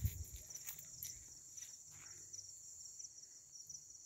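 Crickets chirping faintly in a steady, high, evenly pulsing trill, with a few brief handling clicks near the start.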